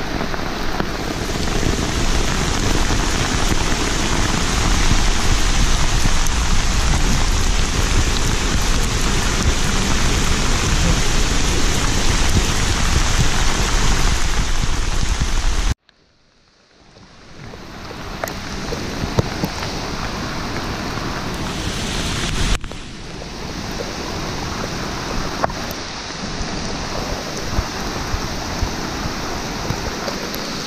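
Steady heavy rain falling, with scattered sharp drop hits. The sound cuts out abruptly about halfway through and fades back in a couple of seconds later.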